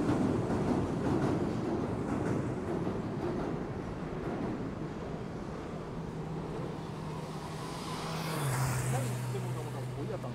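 Road traffic on a busy city street. A vehicle passes, loud at first and fading, then a steady low engine hum sets in and drops in pitch a little after eight seconds, with a brief hiss around then.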